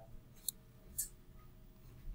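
Two sharp clicks of a computer mouse button, about half a second apart, against faint room noise.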